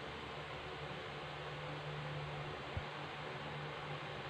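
Quiet steady room hiss with a low hum, and one soft low thump about three-quarters of the way through.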